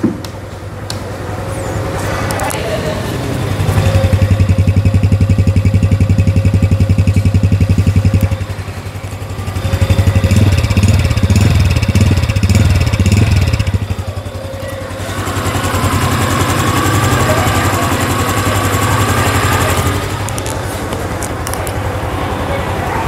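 Honda Super Cub 110's single-cylinder four-stroke engine running just after being started, swelling louder in two stretches of about four seconds each and then settling to a steadier run.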